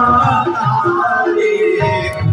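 Hindu devotional bhajan: a sung melody with instrumental accompaniment and a low pulsing beat, continuous and loud.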